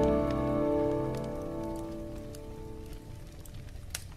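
The last notes of a jazz instrumental ring and die away over the first two seconds, leaving a wood fire crackling with scattered sharp pops, one louder pop near the end.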